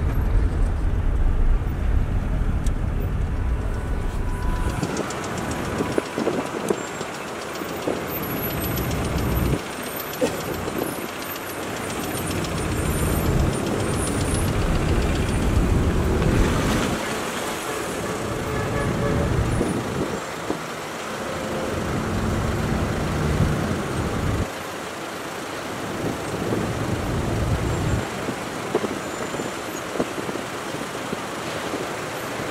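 Slow queuing road traffic: car engines idling and moving off, heard from a car, with the low engine rumble swelling and fading every few seconds.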